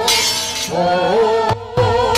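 Javanese gamelan music accompanying a stage fight: a bright metallic crash at the start, then a wavering melody with vibrato, broken by sharp struck accents near the end.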